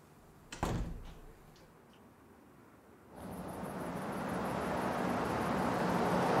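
A door shuts with one sharp knock about half a second in. From about three seconds in, the engine and tyre noise of a car on the road swells steadily as it approaches, becoming the loudest sound.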